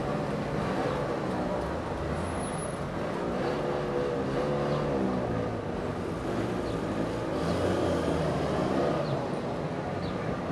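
A line of Trabants crawling past at low revs, several of their two-stroke twin-cylinder engines running at once and overlapping, with pitch wavering as the cars creep forward.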